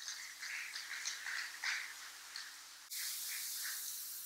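Audience applauding, faint and even, with a click about three seconds in.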